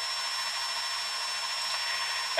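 A steady whirring background noise with a thin, high-pitched whine running through it, unchanging throughout.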